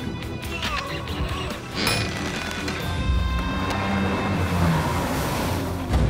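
Cartoon soundtrack: background music with layered action sound effects, and a rush of noise that builds toward the end and breaks off suddenly.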